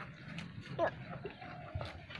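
A goat chewing and pulling at fresh grass and leaves, with rustling and small clicks. A short, high vocal sound about a second in.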